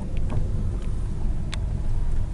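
Low, steady rumble of a car's engine and tyres heard from inside the cabin as the car rolls along slowly. There is one sharp click about one and a half seconds in.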